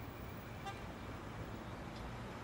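Steady, low background ambience with a brief faint beep about two-thirds of a second in.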